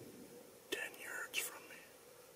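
A person whispering a few hushed words in two short breaths of speech about a second in.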